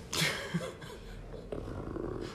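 Brief breathy laughter from a couple of people near the start, then a faint low hum.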